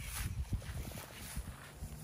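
Wind rumbling on the microphone outdoors, with faint rustling in dry grass.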